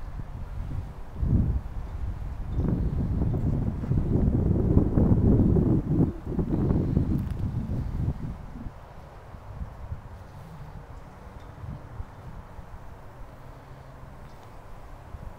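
Wind buffeting the camera microphone in irregular low gusts, heaviest for the first eight seconds or so, then dropping to a quieter rumble.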